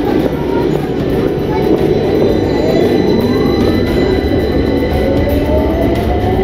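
London Underground Victoria line train (2009 Stock) pulling out of a deep-level tube platform: loud, steady rumble, with an electric motor whine that climbs in pitch from about halfway through as the train picks up speed.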